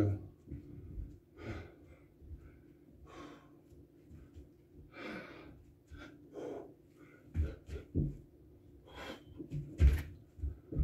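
A man breathing hard between burpees, with a loud breath every second or two. Near the end come a few dull thumps on a rubber floor mat as he drops into the next rep.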